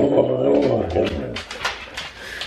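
Siberian husky giving a low, drawn-out vocalization that falls in pitch, lasting about a second and a half, then trailing off.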